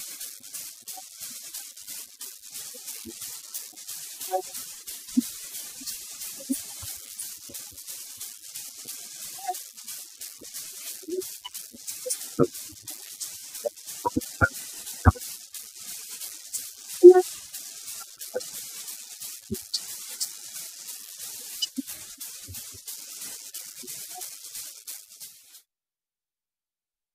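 Open-air ground ambience: a steady hiss with scattered faint short calls and a few sharp knocks, the loudest short sound about 17 seconds in. The sound cuts out abruptly just before the end.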